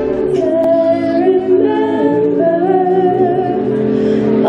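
A mixed vocal group singing a cappella in harmony through microphones, with long held chords and no instruments. Guitar music stops just as the singing begins.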